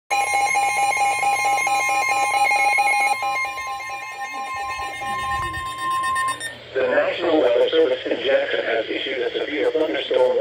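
NOAA weather alert radios going off for a severe thunderstorm warning: a fast-pulsing electronic alarm beep over a steady high warning tone. Both stop about six and a half seconds in, and a voice comes on.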